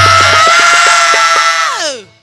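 Bhojpuri dugola singing through a PA: a male singer holds one long, steady note that slides down and fades near the end, over quick hand-drum strokes.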